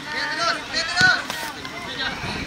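Outdoor shouting and calling voices of footballers during play, with one sharp thump about a second in.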